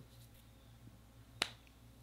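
A single sharp click about a second and a half in, over quiet room tone with a low hum.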